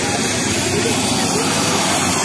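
Helicopter's turbine engine and rotor running loudly and steadily, with the chatter of a crowd underneath.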